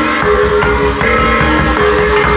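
Gong-and-drum ensemble playing: hanging bossed gongs struck one after another in a quick rhythm, their ringing pitches changing every fraction of a second, over a large barrel drum beaten steadily with two sticks.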